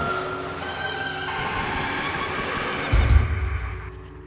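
Background music with sustained tones, and a heavy low thump about three seconds in: a climber's body hitting the padded floor mat of a climbing gym after a ground fall.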